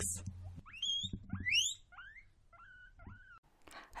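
Guinea pigs wheeking: a run of about six short, high squeals, the first few sweeping steeply upward in pitch, the last ones shorter and flatter, the excited call of guinea pigs expecting a treat.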